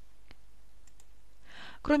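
Faint steady hiss with a few sharp, faint clicks, then an in-breath and a voice starting to speak near the end.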